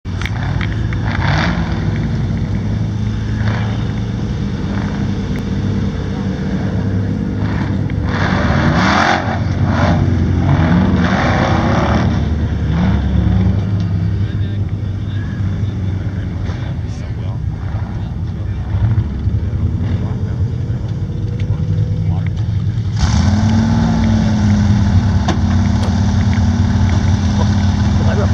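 An off-road rock-racing vehicle's engine revving up and down in repeated bursts as it climbs a rocky trail. About 23 s in, a steadier engine note takes over.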